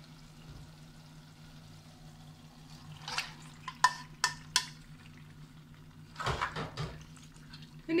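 A few sharp clinks of a spoon knocking against a bowl as raw chicken pieces, liver and gizzard are scraped out, then a short soft wet rush as the meat drops into a clay pot of gravy. A faint steady low hum runs underneath.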